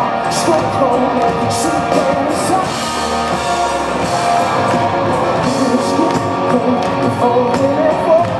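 Live pop-rock band playing: drums, bass and electric guitar, with a male voice singing.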